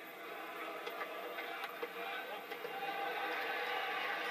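Cricket-ground crowd chatter: a steady murmur of many overlapping voices, with no single voice standing out.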